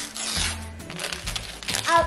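Wrapping paper crinkling and tearing as a small child's hands pull at a wrapped gift, over background music with a steady beat.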